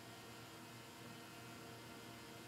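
Near silence: a faint, steady hiss and hum of room tone.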